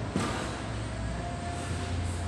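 A single thump a fraction of a second in as the rubber tire head of a tire-flip trainer comes down onto its steel frame, over a steady low hum.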